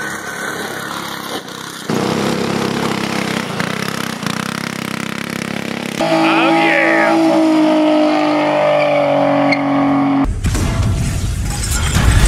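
Quick cuts of vehicle footage: a small go-kart engine running as the kart drives, then a car engine held at high revs with tyres squealing through a burnout. About ten seconds in, it cuts to a loud intro sting.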